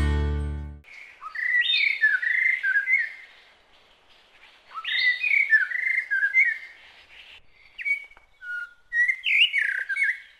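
A music chord fades out, then a songbird sings short warbling phrases, about four of them with pauses in between.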